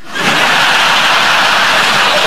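Studio audience laughing and applauding, rising just after the start and holding steady.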